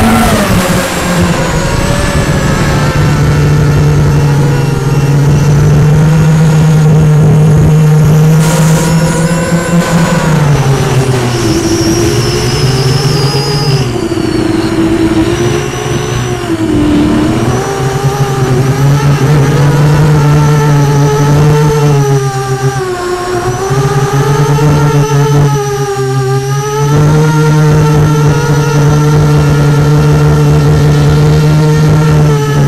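Motor and propeller of a radio-controlled aircraft heard from its onboard camera, running loud and continuous, its pitch wavering up and down, with a falling pitch right at the start and dips around a third of the way in and again near the end.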